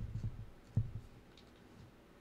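Two soft, dull low thumps about 0.8 s apart, made by ASMR tapping close on the microphone.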